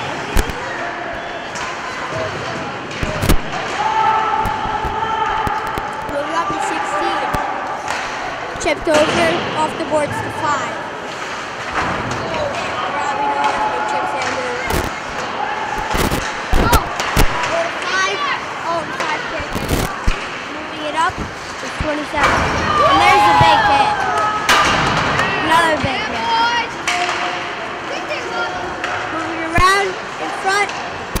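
Ice hockey game sound: sharp cracks of sticks and the puck, with knocks against the boards scattered throughout, over echoing shouts from players and spectators.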